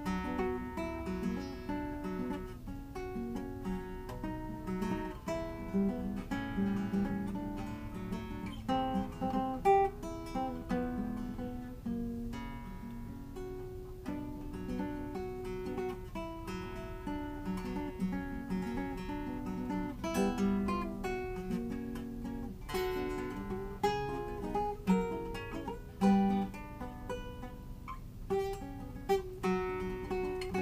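A 1913 Antonio de Lorca classical guitar with a tornavoz, played solo: a steady run of plucked notes and chords, broken by a few sharper strummed chords, heard from across the room.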